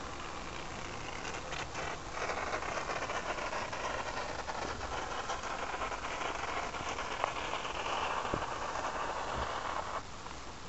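Aerosol can of expanding foam hissing steadily as a bead is squirted out through its straw nozzle, louder from about two seconds in.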